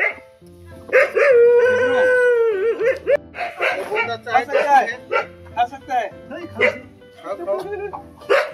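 Dog barking and howling, with one long howl about a second in and shorter barks and yelps after it.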